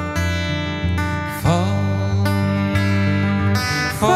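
Live instrumental passage of a slow folk song: acoustic guitar strummed, with an accordion holding long notes underneath and a note sliding up about a second and a half in.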